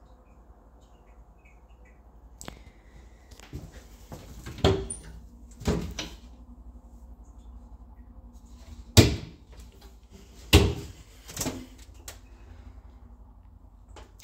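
Wooden bathroom vanity cabinet doors being opened and shut: a string of about seven knocks and thuds, the loudest about nine and ten and a half seconds in.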